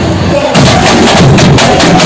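A samba school bateria playing a samba rhythm: surdo bass drums with snare drums, tamborims and other hand percussion, heard from inside the drum section. The playing thins briefly at the start and the full section comes back in about half a second in.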